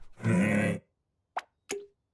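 Cartoon sound effects: a short, loud vocal grunt from the bulldog with a lollipop in its mouth, then, about a second later, two quick pops as the lollipop is yanked out.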